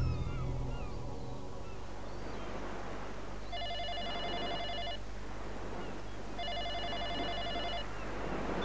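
Electronic ring of a mobile phone, sounding twice: each ring is about a second and a half of several high tones pulsing rapidly together, with a short gap between. At the start, the tail of a loud low musical hit dies away.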